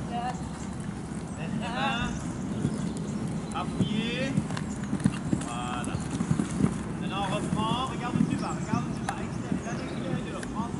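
A horse cantering on a sand arena, its hoofbeats landing as dull irregular thuds, with short high chirps repeating above them.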